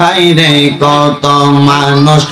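A man chanting a devotional zikir in long, held, melodic notes, with short breaks between about three sung phrases.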